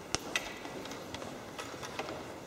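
A few sharp clicks and light taps over a quiet, hollow-sounding room: two louder clicks close together near the start, then three fainter ticks in the second half.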